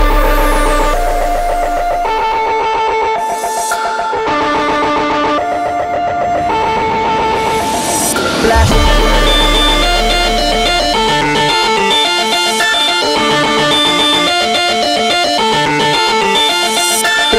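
Loud music soundtrack: a melody of held notes over a pulsing beat, shifting to a new section about halfway through.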